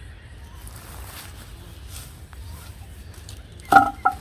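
Faint rustling of hands working in dry grass over a steady low wind rumble, with a short vocal sound near the end.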